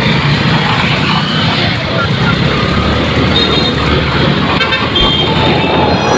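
Road traffic heard from a moving motorbike: a steady rush of engine and road noise, with brief high horn beeps a little past halfway and again near the end.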